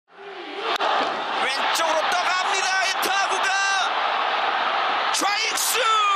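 Baseball stadium crowd noise under a TV commentator's voice, fading in from silence, with a single sharp crack near the start.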